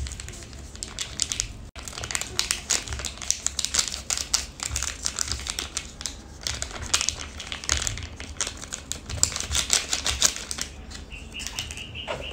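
Foil seasoning sachet crinkling in the fingers as it is shaken and squeezed over a dry instant-noodle block, with a rapid, uneven run of small ticks and rustles as the powder and packet edge hit the noodles.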